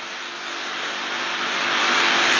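A rushing hiss with no pitch, growing gradually louder from start to end.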